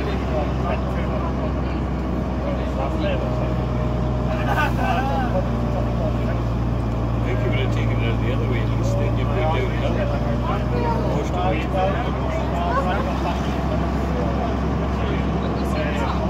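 Gardner 6LXB six-cylinder diesel of a Bristol VRT double-decker bus running under way, a steady low drone heard from the upper deck that swells louder for a few seconds in the middle, under the chatter of passengers.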